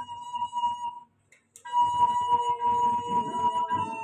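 A small black woodwind instrument played solo into a microphone: a held high note breaks off about a second in for a breath, then a long sustained note follows. A softer, lower tone sits beneath it in the second half.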